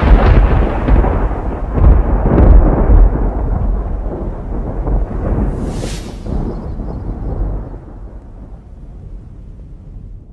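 Thunder sound effect: a heavy rumble with a few sharp cracks in the first three seconds and a short hiss about six seconds in, dying away steadily.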